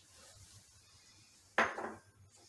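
A small metal spice cup clinks once against the rim of a stainless steel pressure-cooker pot near the end, a sudden short strike that rings briefly.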